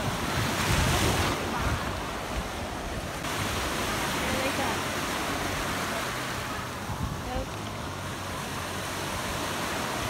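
Small waves breaking and washing into shallow water, a steady rushing hiss that is a little louder in the first second or so.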